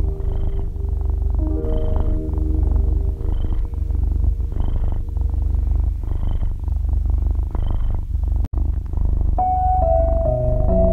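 Soft piano music over a continuous purring rumble that swells with slow breaths about every second and a half. Near the end the sound cuts out for an instant, and after it the piano plays on without the purring.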